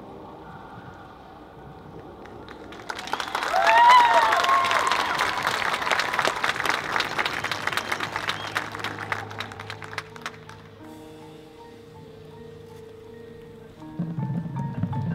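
Audience in the stands breaking into clapping and cheering about three seconds in, loudest at first and dying away by about ten seconds. Soft, held chords from the marching band come before and after the applause.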